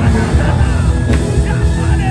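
Loud live worship music with heavy bass, with worshippers' voices crying out over it in wavering pitches.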